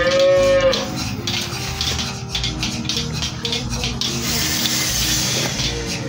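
A cow moos once at the start, a single call under a second long that rises and falls in pitch. Background music plays throughout, and a short hiss comes in about four seconds in.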